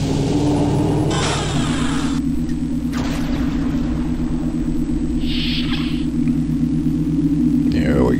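Steady low sci-fi machine drone with a rapid pulsing throb. A short hiss comes about a second in and a softer one about five seconds in.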